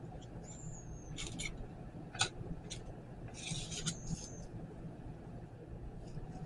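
Plastic pump dispenser on a mason jar of syrup being pressed: faint clicks and scrapes, one sharper click about two seconds in, and two brief thin high squeaks.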